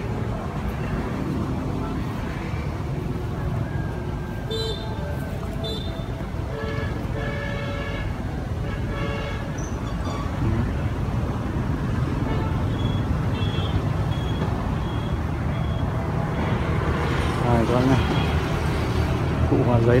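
Outdoor background of steady low road-traffic rumble, with faint far-off voices and, about two-thirds of the way through, a run of short high-pitched peeps.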